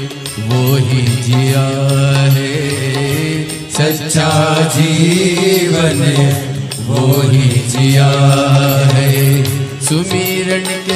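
Hindi devotional bhajan music to Shiva: a chant-like melody of long held notes over a steady low drone, in three phrases of about three seconds each.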